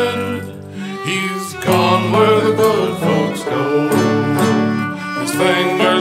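Instrumental break by a string band: fiddle leads over strummed guitar. The music thins out briefly about half a second in, then the full band comes back in at a steady beat just before two seconds in.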